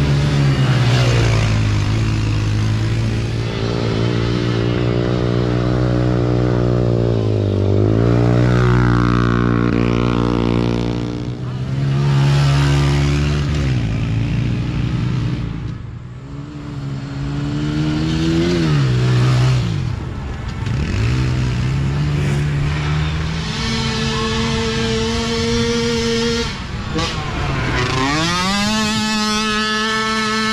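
Small youth racing ATV engines running hard, the pitch rising and falling over and over with the throttle, dropping away briefly several times and climbing sharply again near the end.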